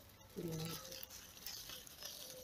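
A man's short drawn-out hesitation sound, about half a second long, followed by faint rustling of apricot leaves as a hand moves among the branches.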